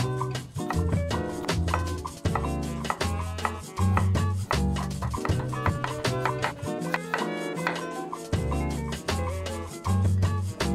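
Latin-style background music with a bass line and a steady beat, the bass dropping out for a moment past the middle. Under it, a chef's knife slices jalapeños and carrots on a wooden cutting board.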